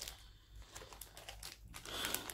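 Faint crinkling and rustling of clear plastic packaging as fabric-wrapped jewellery is handled, with scattered light clicks, a little busier near the end.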